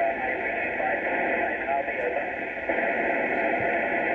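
A VHF FM amateur radio downlink from the International Space Station plays over loudspeakers: heavy, steady radio hiss in a narrow telephone-like band, with the astronaut's voice faint and buried in the noise as he answers the ground station's call sign. The transmission cuts off abruptly at the very end.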